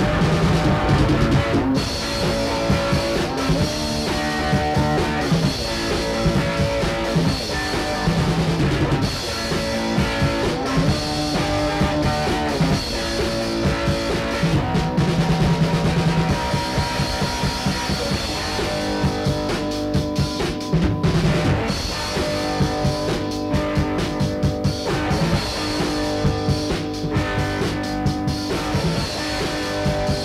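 An amateur rock band playing a song: drum kit keeping a steady beat under guitar, recorded to cassette in 1980 on a Panasonic tape machine through a 4-track mixer.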